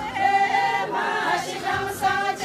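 A group of women singing a Hyolmo folk song together in unison, unaccompanied, in long held notes with a change of pitch about a second in.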